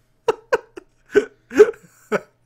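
A man laughing in short bursts, about five in two seconds, the loudest near the end.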